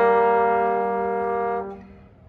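Brass duet, a trombone and a second brass horn, holding one long note together that fades out about a second and a half in.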